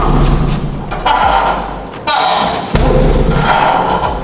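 Kicks landing on a hanging teardrop punching bag: four heavy thuds, irregularly spaced about half a second to a second apart, each dying away quickly.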